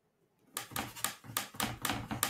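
A quick run of sharp taps and knocks, about five a second and starting about half a second in, from a paintbrush working oil paint on the palette.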